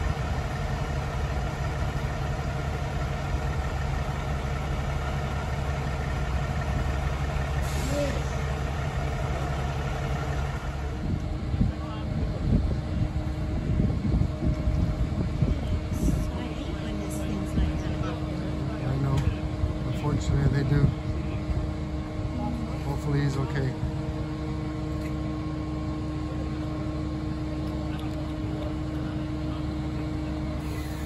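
Diesel engines of parked fire trucks idling steadily. A higher hiss drops away about eleven seconds in, leaving the low engine hum.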